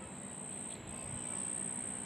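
Crickets chirping in a continuous high-pitched trill, over a faint low hum.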